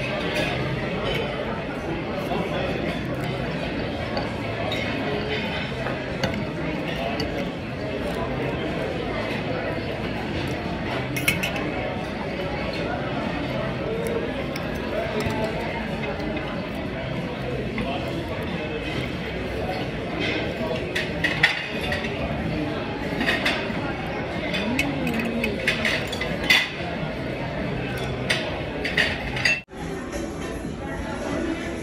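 Metal cutlery clinking and scraping against a metal bowl and a roasted beef marrow bone as the marrow is dug out, the clinks coming more often in the second half, over steady background chatter of diners.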